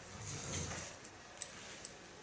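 Quiet haircut handling sounds: a soft low breath in the first second, then two light, sharp clicks from steel hair-cutting scissors and comb being handled, over the faint steady hum of a fan.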